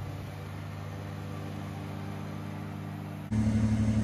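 Kubota BX23S subcompact tractor's diesel engine running steadily while mowing with the belly mower, heard from a distance. Near the end it jumps suddenly to a louder, closer engine sound.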